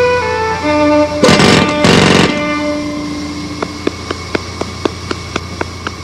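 A violin plays held notes, cut into about a second in by two loud noisy blasts of about half a second each. A low held note then fades under a quick, even ticking, about four ticks a second.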